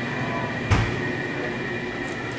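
Steady room rumble with a faint high, steady machine whine, and one dull thump about three quarters of a second in from the phone being handled as it is passed to someone else.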